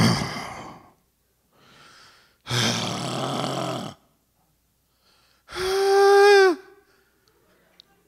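A man sighing. First comes an exhale trailing off, then a faint breath in, then a long breathy sigh. About six seconds in comes the loudest sound, a voiced sigh held on one pitch that drops at the end.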